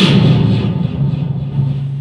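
Dramatic stage sound effect: a sudden loud crash that fades over about a second, over a deep low rumble that holds on. It works as a stinger leading into the play's background music.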